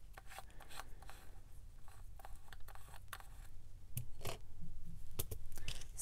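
Small round plastic bead pots being picked up and set down on a tabletop: a scatter of light plastic clicks and soft scrapes, with a couple of sharper clicks near the end.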